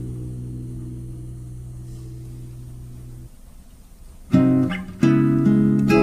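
Acoustic guitar in an instrumental break: a held chord rings and fades away, then after a short lull strummed chords start again about four seconds in.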